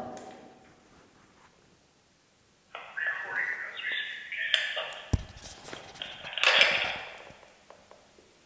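Recorded audio played back through a handheld recorder's small speaker: thin and tinny, with voice-like tones, starting about three seconds in and stopping near the end. A single low thump comes partway through.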